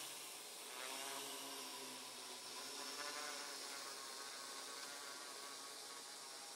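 Faint, steady buzz of a quadcopter's propellers as the drone flies some distance away.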